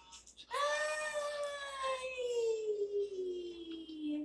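A high voice holding one long note for about three and a half seconds, its pitch falling slowly throughout, played through a television speaker.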